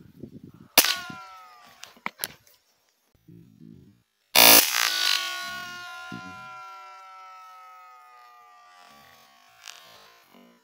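Two sharp cracks from a .22 rifle, about a second in and about four seconds in, the second much louder. Each trails into a ringing tone that slides down in pitch, and the second rings out for about five seconds.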